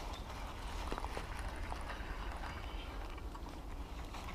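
Faint handling noise from a fishing rod and spinning reel, with a few soft, irregular clicks over a low steady rumble, as line wrapped around streamside bushes is worked free.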